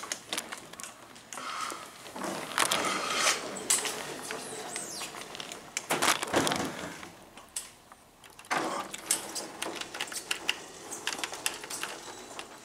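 Irregular rustling and clicking from a hand-held camera being carried while its holder walks, with soft footsteps on carpet.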